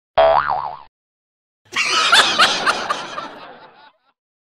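A comic 'boing' sound effect with a wobbling pitch, lasting under a second, then after a short gap a noisier comic sound effect of about two seconds, with several quick rising chirps, fading out.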